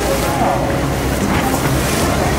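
Boat under way, its hull cutting through the water with spray splashing along the side, over a steady low rumble and wind on the microphone.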